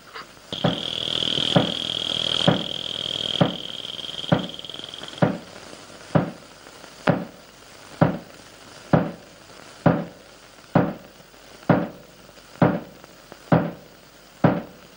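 Film background score: a slow, steady drum beat, one stroke a little under every second. A high held note sounds over it for the first five seconds, then stops.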